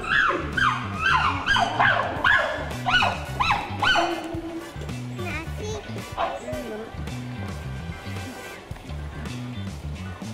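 Chimpanzee calls: a run of rising-and-falling cries, about two a second, that die away after about four seconds. Background music with a steady bass line plays underneath.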